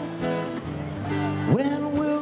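Live blues-rock band playing a slow ballad: guitar with sustained chords from a string section. A note slides up into a held tone near the end.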